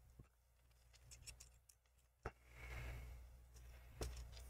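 Mostly near silence, with a few faint clicks and a sharper click a little past two seconds in, followed by about a second of faint whirring from a small electric screwdriver driving a screw into the laptop.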